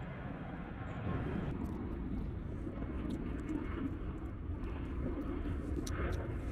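A low, steady rumble that swells about a second in, with a few faint sharp clicks as velvet shank mushrooms are cut from a stump with a pocket knife.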